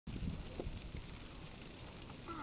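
Low wind rumble on the microphone, strongest in the first second, with a few faint crackles from a dry-grass fire.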